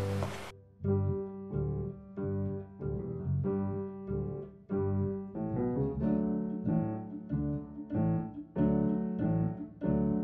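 Piano music: a steady run of notes about two a second over a low bass line, starting just under a second in.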